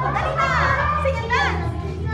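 Karaoke backing track playing with a steady bass line, and a young girl's voice over it through the microphone.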